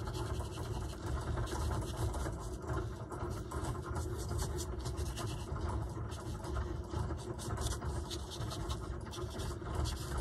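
Fine paintbrush strokes scratching lightly and irregularly on a paper journal page, over a steady low background hum.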